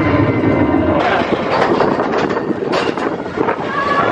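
Expedition Everest roller coaster train running along its steel track, a loud rush and rattle of the cars and wheels. About a second in the sound turns into a noisier clatter with sharp knocks.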